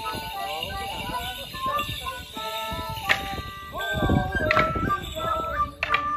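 A small folk band playing a lively Morris dance tune, a melody that steps from note to note. Three sharp wooden knocks of longsticks clashing cut through the tune in the second half.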